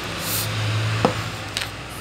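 A steady low hum, with brief handling noises over it: a short hiss near the start and a sharp click about a second in.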